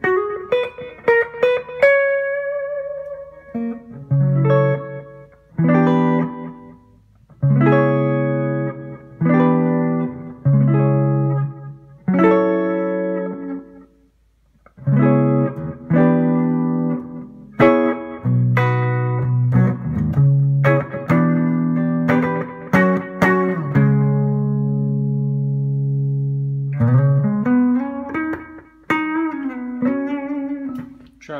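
Electric guitar, a PRS SE Custom, played through a Line 6 M5 stompbox modeler on its Digital Delay with Mod preset with the delay time at 250 milliseconds, into a Carvin Legacy 3 amp. It is a run of strummed chords with short pauses between them, and one chord is left ringing for a few seconds near the end.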